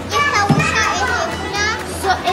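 Several young children talking and calling out over one another.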